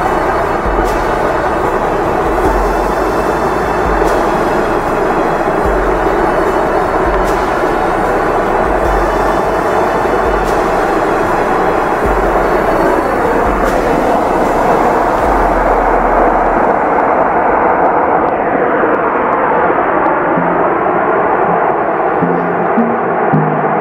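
Large iceberg breaking apart: a loud, steady rush of collapsing ice and churning water, with wind buffeting the microphone in deep gusts through the first two-thirds.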